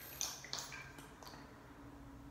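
Faint, short swishes and ticks of a small makeup brush sweeping powder highlighter across the face, several in the first second and a half, over a low room hum.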